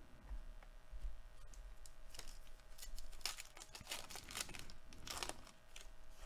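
A sealed trading-card pack wrapper being torn open and crinkled by hand: a run of short crackling rips from about two seconds in until near the end.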